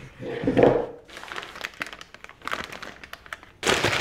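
Disposable plastic piping bag crinkling and rustling as it is handled with buttercream inside, in irregular bursts of small crackles, louder about half a second in and again just before the end.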